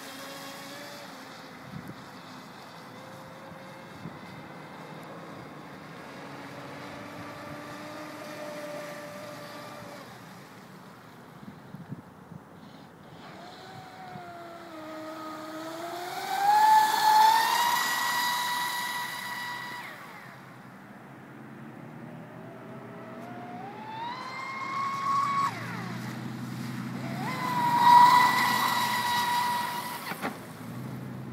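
Traxxas Spartan RC speedboat's brushless motor (Castle 1520 1600Kv) whining at speed. The pitch climbs and then holds steady at full throttle, loudest twice, about halfway through and near the end, with the hiss of spray from the hull.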